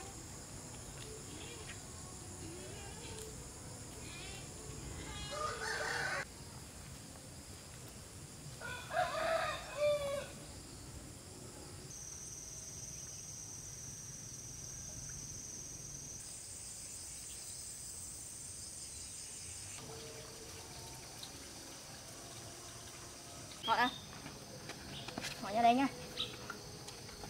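A rooster crowing a couple of times in the first half, over a steady high drone of insects.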